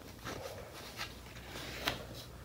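Soft handling of a thin paperback picture book as it is opened to its first page: faint paper rustling with a small click about a second in and a sharper tap near the end.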